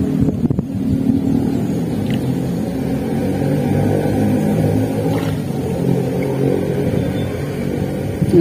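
An engine running steadily with a low hum, with a few sharp clicks about half a second in.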